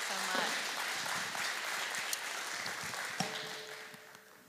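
Audience applauding, dying away over the last second.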